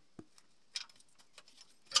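A few light clicks and metal taps as a steel crankshaft locking pin is worked into the locking hole in a BMW N13 engine's aluminium housing, locking the crankshaft for setting the timing. The sharpest and loudest click comes at the very end.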